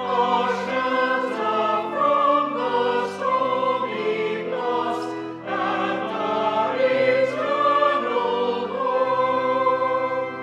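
A choir singing a hymn in held chords that move on every second or so, the sung words' consonants showing as brief hisses.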